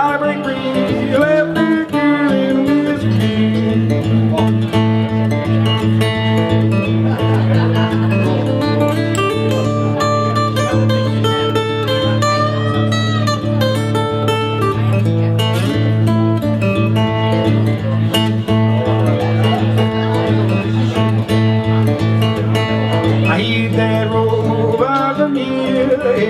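Steel-string acoustic guitar strummed in a steady rhythm over a held low note, an instrumental passage of a folk song; singing comes back in near the end.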